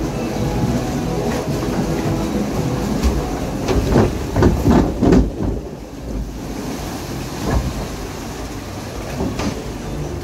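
Log-flume boat riding along its water channel: steady rushing water and hull rumble, with a cluster of knocks and bumps about four to five seconds in, then a softer, steadier wash of water.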